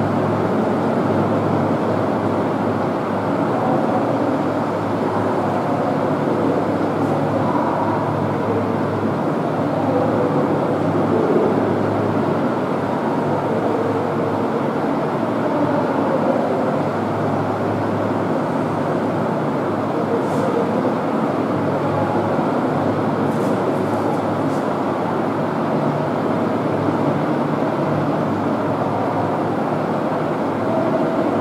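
Steady mechanical background rumble with a constant low hum, unchanging throughout.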